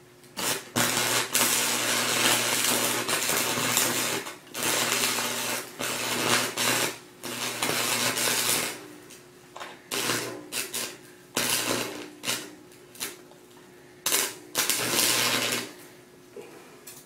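Stick (arc) welder's arc crackling as the electrode rod is struck against a laptop hard drive's metal case. It burns in one long stretch at first, then in shorter bursts with gaps that grow more broken after about nine seconds, over the welder's steady electrical hum.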